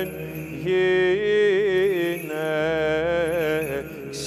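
Byzantine liturgical chant: a single sung melodic line, ornamented and wavering in pitch, in two phrases with a short break between them, over a steady lower note held throughout as a drone.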